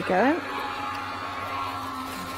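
Electric die-cutting machine running, drawing a die and paper through its rollers: a steady motor hum that starts about half a second in and holds level.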